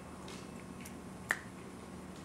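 A single sharp click about a second in, with a couple of fainter ticks before it, over a faint steady low hum.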